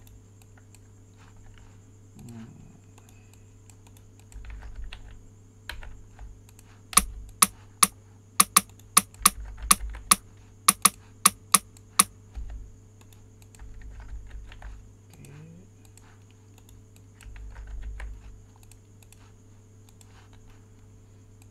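Clicking of a computer keyboard and mouse, scattered at first, then a quick run of about a dozen sharp loud clicks through the middle, over a steady electrical hum.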